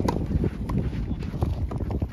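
Tennis rally: several sharp pops of rackets striking the ball and the ball bouncing, with the scuff of players' footsteps on the court and low wind rumble on the microphone.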